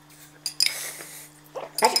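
A metal spoon clinking and scraping against a small cup: one sharp clink about half a second in, then a short scrape with a faint ring.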